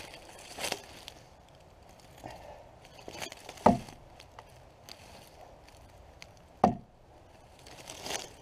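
Axe bits being swung into a log to stand the axes up in the wood, heard as sharp chops. A lighter knock comes near the start, then two loud chops about three seconds apart.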